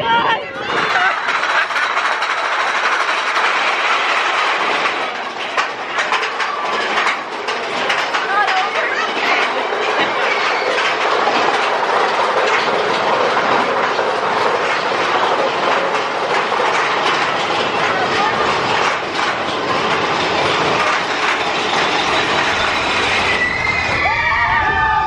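Big Thunder Mountain Railroad mine-train roller coaster running along its track at speed: a steady, dense clatter of the cars and wheels with many sharp clacks. Riders' voices come through now and then, more near the end.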